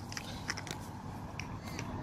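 A few light, scattered clicks and crackles from a plastic bottle being handled in the hand, over a low steady background.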